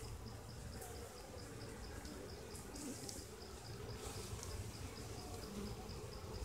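Faint steady hum of honey bees clustered on an open hive frame that is held in the hand.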